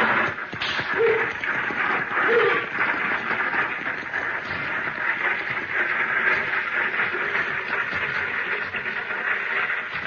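Radio-drama sound effect of a six-horse stagecoach rolling along: a steady rattling rumble of wheels and hooves that starts abruptly as the coach sets off.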